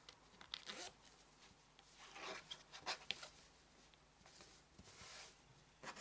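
Faint rustling and scraping of cotton fabric as hands smooth and pin it flat on a cutting mat, in several short, irregular bursts.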